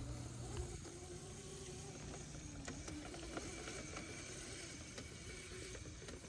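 Faint hum of a child's small dirt bike motor, its pitch wavering gently up and down as it rides, over a light steady hiss.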